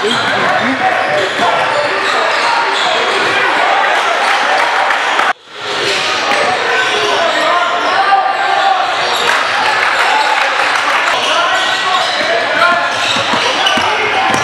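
Live game sound of a basketball game in a gym: the ball bouncing on the hardwood court under a steady wash of indistinct, echoing talk and shouts from players and spectators. The sound cuts out sharply for a moment about five seconds in, then resumes.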